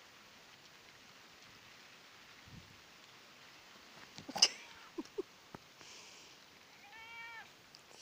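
A British Shorthair cat meowing once near the end, a short call that rises and then falls in pitch. About halfway through there is a sharp knock, followed by a few light taps.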